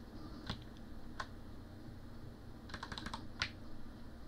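Faint computer keyboard keystrokes: a couple of single clicks in the first second or so, then a quick run of several keystrokes near the end.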